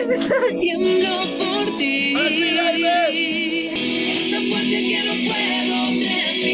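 A song playing, a sung melody over steady backing music, with a wavering held note about two seconds in.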